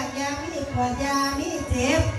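A woman singing into a microphone in a gliding, ornamented line, over the steady held chords of a khaen, the Lao-Isan bamboo mouth organ.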